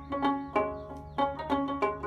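Background music: a plucked string instrument playing a quick, even run of notes, about four a second.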